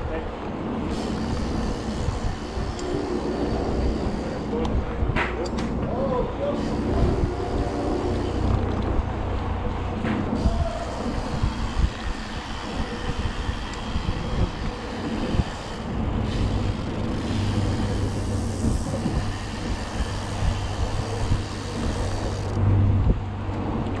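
Steady rumble of wind and tyre noise as a BMX bike rolls downhill at speed on a city street, picked up by a handlebar-mounted camera. Faint voices are mixed in.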